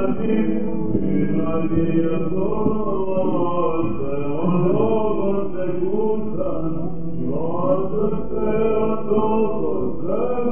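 Byzantine chant in first mode sung by male cantors: a slow, winding melismatic melody held over a steady low drone note (the ison).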